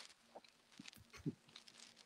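Near silence in a pause of a video call: room tone with a few faint clicks and one brief, short murmur about a second and a quarter in.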